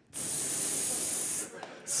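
A man's mouth-made hiss into a stage microphone, imitating fajitas sizzling on a hot skillet: one long high hiss of about a second and a half, then a short second hiss near the end.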